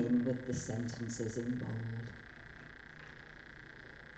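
A person's voice speaking briefly, with words the recogniser did not catch. It falls quiet about halfway through, leaving low room tone with a faint steady hum.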